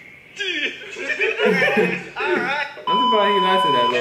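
Voices from a TV clip, then about three seconds in a steady, high electronic beep comes in suddenly and holds for about a second under the voices: the test tone that goes with TV colour bars.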